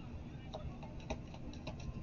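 Tarot cards being handled and shuffled: a quick run of about ten faint, light clicks starting about half a second in.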